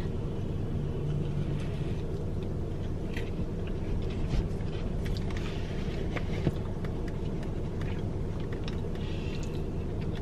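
Soft chewing of a frosted sugar cookie, with small scattered mouth clicks, over the steady low hum of a car cabin.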